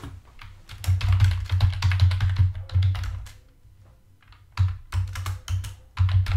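Typing on a computer keyboard: a quick run of key clicks, a pause of about a second, then more typing near the end.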